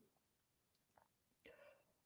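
Near silence: room tone, with a faint short sound about a second in and another, slightly longer one near the end.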